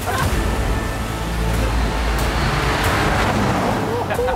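Large army truck driving on a gravel track, its engine rumbling and its big off-road tyres crunching over gravel. The sound swells to a peak about three seconds in as the truck passes close.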